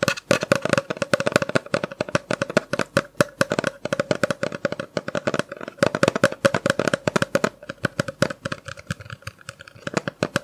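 Rapid fingernail tapping on a hard, hollow-sounding object, many light taps a second in an uneven flurry like typing, close to the microphone. The tapping thins out and turns lighter near the end.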